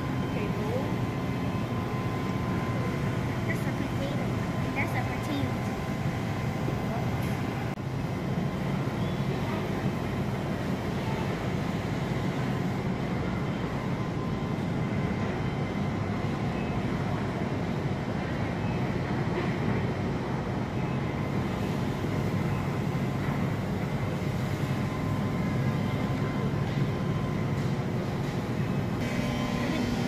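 Steady grocery-store background noise: a constant low hum with faint steady tones over it, and voices in the background.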